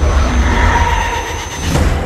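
Heavy rain with a loud, deep rumble underneath, a film sound effect that dies away near the end.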